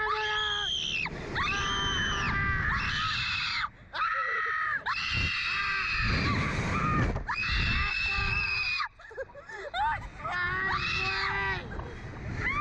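Two riders on a slingshot reverse-bungee ride screaming: a string of long high-pitched screams, one after another, with short breaks for breath. A steady low rumble runs underneath.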